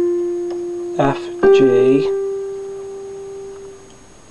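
Electronic keyboard with a piano voice: one held note fading away, then a second, slightly higher note struck about a second and a half in and held until it fades out.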